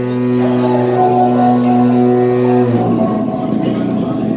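Live electronic band music: a sustained low synthesizer drone with a higher note pulsing on and off above it. About two and a half seconds in, the held drone breaks up into a busier, stuttering texture.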